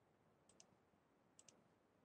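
Near silence with two faint double clicks about a second apart, like a computer mouse button pressed and released, as the presentation slide is advanced.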